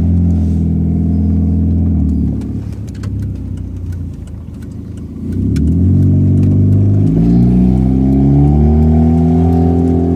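Car engine heard from inside the cabin while driving. It runs strongly at first, eases off about two seconds in, then picks up again after about five seconds, rising in pitch as the car accelerates.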